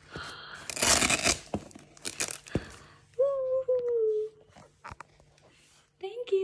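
Packaging being torn and rustled open: two loud noisy tearing bursts and a sharp click, followed by a high voice drawn out over two falling notes.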